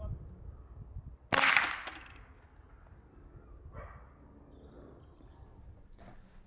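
A sudden sharp crack about a second in, fading away in under a second, from a homemade vacuum syringe rocket launching off its wooden stand as the vacuum snaps the piston back; a fainter short rush follows a couple of seconds later.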